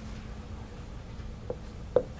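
Quiet room hum with two short taps, about one and a half and two seconds in: a dry-erase marker striking the whiteboard as writing begins.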